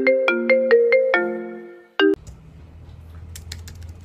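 Wooden xylophone struck with mallets in a quick run of ringing notes, a tune like a phone's marimba ringtone, dying away with one last note about two seconds in. It then cuts to a low steady hum with a few faint clicks.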